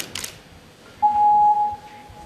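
A single steady electronic beep starting about a second in, held for just under a second and then fading away.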